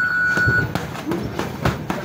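Gloved punches and kicks landing in a kickboxing sparring bout: a quick run of sharp smacks, about eight in under two seconds. Under the first of them a steady high electronic beep stops just under a second in.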